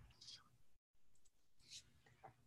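Near silence with faint clicks of computer-keyboard typing through a video-call microphone, cut briefly to dead silence a little before halfway through.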